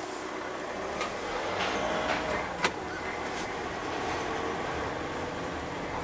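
MAN TGE van's 2.0-litre diesel engine running at low speed, heard from inside the cab, with road and tyre noise. A few short clicks and knocks break through, the sharpest about two and a half seconds in.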